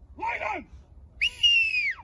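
A short shouted call, then a whistle: a brief chirp followed by one long, slightly falling note that drops away at the end, a handler's whistle signal to a working dog.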